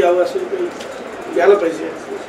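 A man speaking in short, broken phrases through a face mask, with a pause between them.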